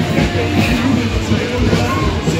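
An announcer's voice over a loudspeaker system, with music playing underneath on a steady low beat.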